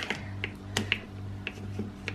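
Pink plastic sippy cup's lid being pushed back onto the cup: a sharp plastic click at the start, then a few faint clicks and taps as it is pressed into place.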